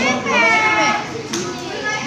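Young people's voices: a loud, high-pitched drawn-out call or exclamation in the first second, with chatter around it.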